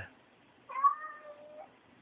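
A domestic cat meowing once, a drawn-out call of about a second that starts a little over half a second in.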